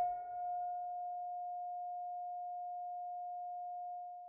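Film score: the tail of a struck note dying away into a single steady held tone that rings on without change.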